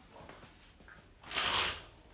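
A wheeled walking frame being pushed forward across the floor: one brief rustling scrape about one and a half seconds in.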